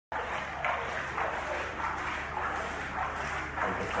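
Pool water splashing and sloshing as an infant is moved through it, in repeated swishes about every half-second or so.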